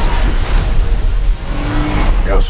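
Dense film sound effects of cars and engines revving over a wreck's rumble, mixed with music, with a held low note near the end.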